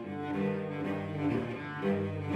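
Several cellos playing together, bowed, with overlapping held notes in different voices that change every second or so.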